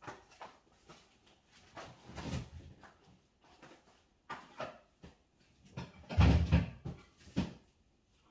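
Kitchen handling sounds: plastic food containers knocked and set down and a fridge door opened and shut, in scattered short knocks. The loudest is a heavy thump about six seconds in.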